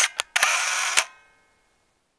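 Camera shutter sound: two quick clicks, then a longer burst of shutter noise about half a second long that cuts off about a second in.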